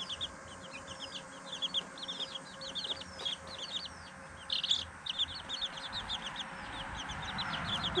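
Chicks peeping: many short, high-pitched peeps repeated quickly and overlapping, with a denser burst of peeping about halfway through.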